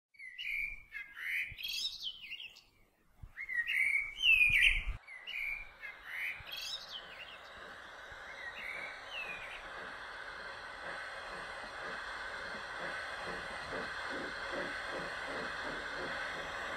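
Birds chirping and calling for the first half, with short sweeping chirps. Then a passing train's running sound builds: a steady rushing noise with a quick, even clatter of wheels on the rails.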